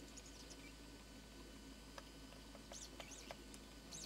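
Near silence with faint, high bird chirps a few times, in short clusters near the start and again in the last second or so, and a couple of faint ticks.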